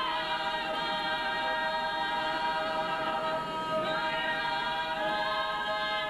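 A choir singing a cappella in long held chords, moving to a new chord about four seconds in.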